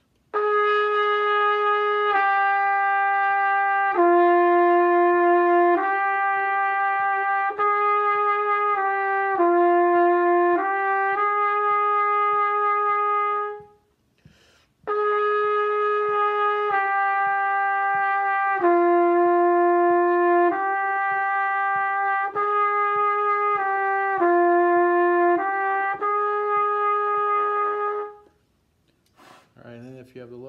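Trumpet playing a slow warm-up exercise, a single melodic line of held notes. It comes in two phrases of about 13 seconds each, with a short breath between them about 14 seconds in.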